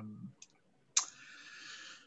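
A brief 'um' trails off, then a sharp mouth click about a second in, followed by about a second of soft breath hiss on a headset microphone as the speaker draws breath to go on talking.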